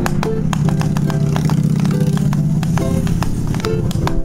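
Ukulele being played, a quick run of plucked notes and strums, over a steady low hum.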